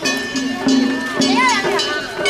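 Japanese festival hayashi music played on a float: taiko drums struck in a steady rhythm with a metallic clanging and a held high note, over crowd voices.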